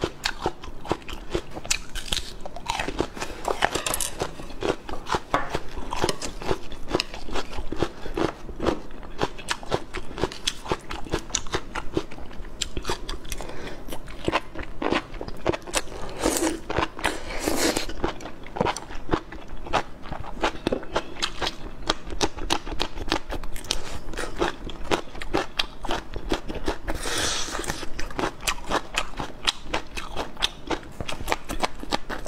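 Close-miked eating sounds: crisp crunching and wet chewing as a person bites into raw shallots and fresh red chili peppers, a dense run of crunches throughout, with a few louder wet crunches about halfway and near the end.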